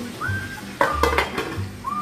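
A metal spoon clinking against a ceramic coffee mug a few times, about a second in, as bread is dipped into the coffee.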